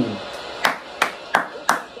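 Four sharp hand claps, evenly spaced about a third of a second apart.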